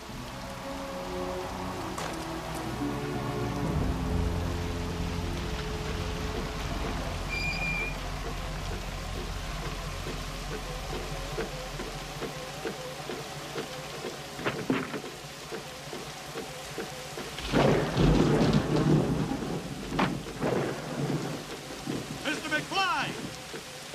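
Heavy rain falling steadily with rumbling thunder, under a slow film score of held notes that step downward. A louder crash of noise comes about three-quarters of the way through.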